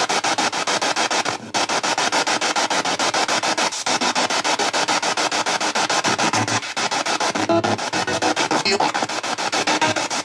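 A handheld spirit-box radio sweeping fast through stations, played through a JBL portable speaker: loud static chopped into many short pulses a second, with brief scraps of radio voices near the end, which the on-screen caption takes for a spirit saying "He didn't know that he killed."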